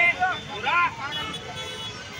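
Loud shouting voices over steady street traffic noise, with a brief steady tone about a second in.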